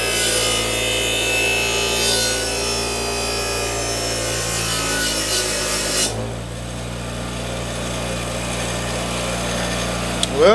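Craftsman bench grinder with a steel oil pan pressed against its spinning wheel, grinding and scuffing the metal for about six seconds. The pan is then pulled away and the grinder's motor keeps running free with a steady hum.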